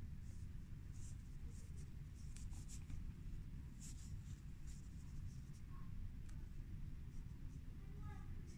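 Faint, irregular scratchy rustling of yarn and a sewing needle being pulled through crocheted fabric as a spike is stitched on by hand, over a low steady hum.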